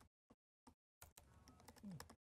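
Faint computer keyboard typing: a handful of separate, scattered key clicks.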